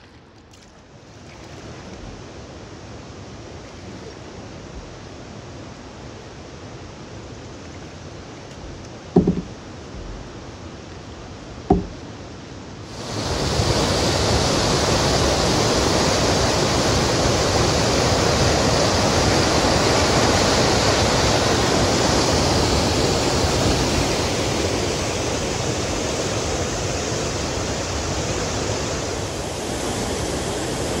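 Waterfall on a river: a steady rush of whitewater pouring over rock, which cuts in suddenly and much louder about 13 seconds in. Before that a softer steady rush, with two sharp knocks a few seconds apart.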